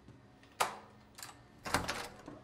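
Three sharp clicks or taps about half a second apart, the last one loudest and doubled.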